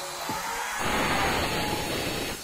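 Handheld electric cutter with a disc blade cutting into a marble slab, a steady hissing cutting noise that grows louder about a second in as the blade bites deeper.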